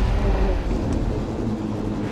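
Nissan Altima-te AWD, an Altima AWD sedan on tracks, driving through deep snow: a steady low engine and drivetrain rumble.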